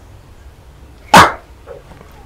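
A dog barks once, a single short sharp bark about a second in.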